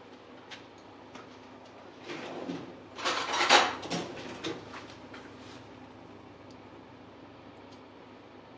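Kitchen clatter of cutlery being rummaged, as in a drawer while a spoon is fetched: a few light clicks, then a loud jangle of several knocks about two to four seconds in.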